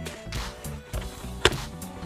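Background music with a steady beat. About one and a half seconds in there is a single sharp click: the chin curtain of a KYT TT Course helmet snapping free as it is pulled off.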